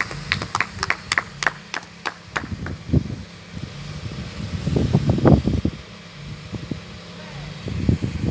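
Rhythmic hand clapping, about four to five claps a second, for the first two and a half seconds, over a steady low hum from a fire engine's motor running. Around the middle come several loud, low rumbling bumps, like wind or handling on the phone's microphone.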